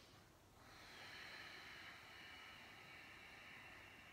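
A woman's faint breathing while holding a yoga pose: one long, soft breath starting about half a second in and lasting a couple of seconds.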